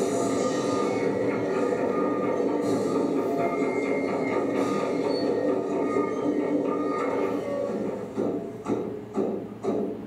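Soundtrack of a potlatch film playing over a hall's loudspeakers: a dense, steady wash of sound with held tones. About eight seconds in it gives way to a run of evenly spaced beats, about two a second.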